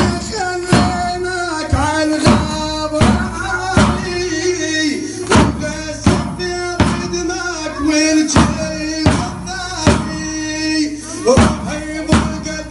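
A man chanting a mourning lament into a microphone, with a loud sharp strike about every three quarters of a second in time with the chant: the chain flails (zanjeer) of men performing matam, swung onto their backs together.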